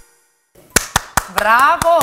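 A woman clapping her hands several times in quick, uneven claps, joined about halfway through by her own excited voice, its pitch sliding up and down.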